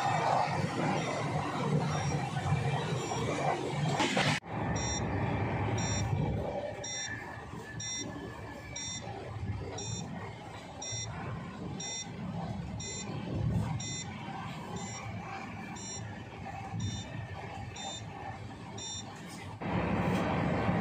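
Running noise of an electric-hauled passenger train coach at speed, a steady low rumble. From about four seconds in, a short, high electronic beep repeats about once a second.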